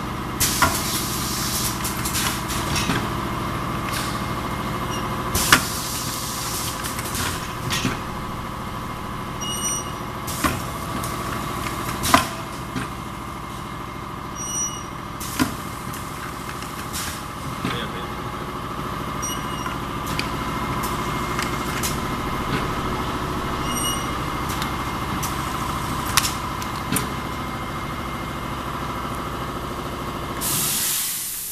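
Rotary dual-head cup filling and sealing machine running: a steady motor hum with irregular sharp clacks and short bursts of air from its pneumatic parts.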